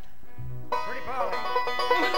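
Five-string banjo kicking off a bluegrass song: quiet for the first moment, then a quick run of picked notes starting under a second in.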